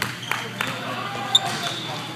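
Volleyball players' voices echoing in an indoor gym, with a few short knocks of the ball. The sharpest knock comes just past the middle and is the loudest sound.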